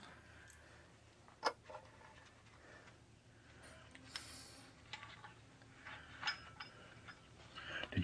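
Faint, sporadic metal clicks and knocks from parts and hands being worked at a truck's driveshaft flange. The sharpest click comes about one and a half seconds in, with a brief rustle near the middle.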